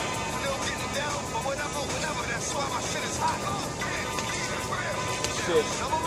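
Background music playing at a moderate, even level, with no distinct impacts.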